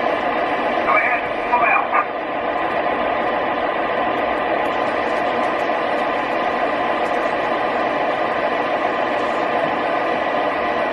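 O gauge three-rail model train running, with a steady rumble from the model's electronic diesel sound system and its wheels on the track. A brief burst of radio-like voice chatter comes between one and two seconds in.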